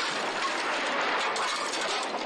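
Film sound effect of a car crashing into a wooden barn: a loud, sustained, noisy crash with a few sharp knocks of breaking timber through it, easing off just after the end.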